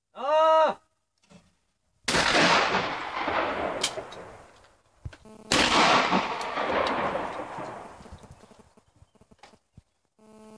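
A short shouted call for the clay, then two shotgun shots about three and a half seconds apart from an over-under shotgun. Each shot rings out under the roof of the shooting stand and fades over a few seconds.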